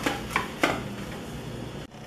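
A few light clicks and taps in quick succession as a silicone pastry brush works oil over an aluminium baking tray and the tray is handled, over a low kitchen background; the sound drops out for an instant near the end.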